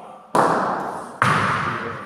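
Bocce balls knocking hard twice, about a second apart, as a thrown ball strikes at the far end of the court; each knock rings out in a reverberant hall.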